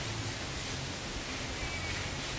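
A steady, even hiss with a low rumble underneath.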